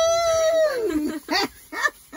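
A woman's long, high-pitched laughing squeal that rises and then falls over about a second, followed by a few short bursts of laughter.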